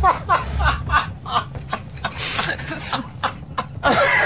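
A person breaking into stifled laughter mid-sentence, unable to hold it in: quick, short, pitched giggles, then a loud breathy burst of laughter a little after two seconds.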